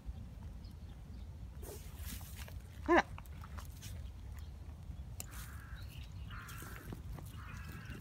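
A black Labrador mix digging in dry soil and leaf litter, its paws scraping and scratching the dirt in irregular strokes.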